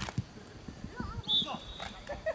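A football kicked hard, a sharp thud at the very start, followed by irregular low thuds of players running on grass and a brief shout. Just past halfway comes a short high whistle.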